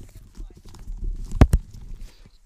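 Low rumbling handling noise over a video-call line, with two sharp knocks in quick succession about a second and a half in.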